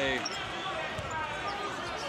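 A basketball bounces on the hardwood court, one clear bounce about a second in, over a low murmur of the arena crowd.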